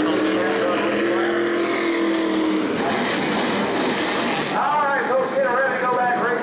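Modified race car engine running at speed, its note climbing slightly in pitch and then holding before it drops away about two and a half seconds in.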